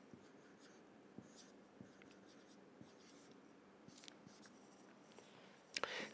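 Faint felt-tip marker strokes on a whiteboard, a few short scratches as a line of text and an arrow are written.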